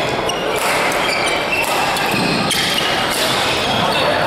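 Badminton rally: racquets striking the shuttlecock several times, with court shoes squeaking in short high chirps on the hall floor, over a steady din of the busy sports hall.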